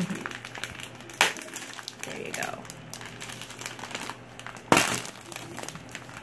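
A thin clear plastic bag crinkling and rustling as hands handle it and pull it open, in short irregular crackles with one loud rustle late on.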